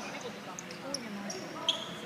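Basketball shoes squeaking on a wooden court floor during play: several short, high squeaks, the loudest near the end.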